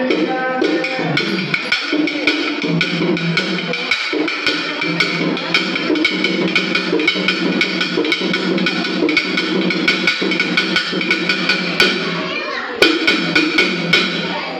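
Pambai, the Tamil cylindrical drum pair, beaten with sticks in a fast, even rhythm of about four sharp strokes a second over a steady held tone. The beat eases near the end, then a few loud strokes follow.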